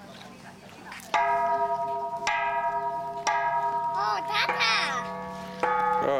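Metal temple bells struck four times, the first about a second in, each stroke ringing on long and overlapping the ringing of the last.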